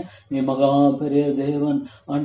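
A man praying aloud in Tamil draws out a word in a long, steady, chant-like tone, after a brief pause at the start. The voice breaks off just before the end.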